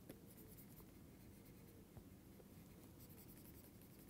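Near silence, with faint scratching and a couple of light taps of a stylus drawing on a tablet screen.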